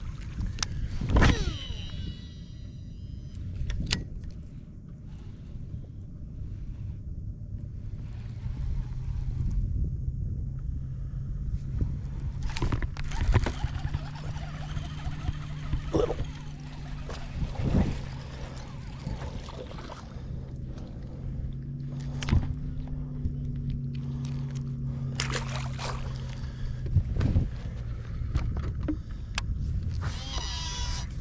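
Low steady hum of a bass boat's motor, stepping in pitch a couple of times, with scattered knocks and clicks on the boat. A short burst of high chirping comes about a second in.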